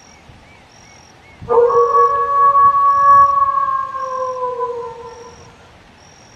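One long canid howl, starting about a second and a half in and holding for about four seconds, its pitch sagging slightly as it fades out.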